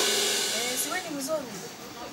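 The tail of a crash-cymbal sound effect, a loud hiss dying away over the first second and a half, with faint low voices under it.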